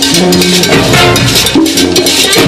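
Marching band playing: brass holding chords that change every second or so over quick, steady drumming.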